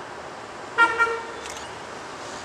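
Short horn toot from an approaching Metro-North electric commuter train, a single brief sound about a second in with two quick pulses, over a steady background hiss.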